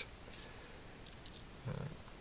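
A few faint, short clicks of small plastic Lego parts being handled as a rubber tyre is fitted onto a wheel hub.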